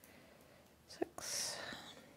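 A brief whisper from a woman about a second in, a short breathy hiss, over faint room tone.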